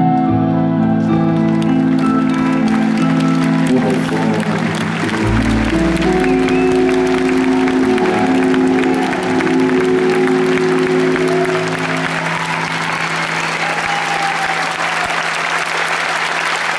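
Audience applause builds over the final held keyboard chords of a live song, with a deep bass note coming in about five seconds in.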